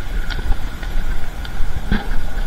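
A motor vehicle's engine running close by: a low, steady rumble with a faint steady high whine over it.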